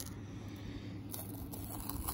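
Faint, soft handling sounds from wet hands working a skinned rabbit carcass, with a few light clicks about a second in over low background noise.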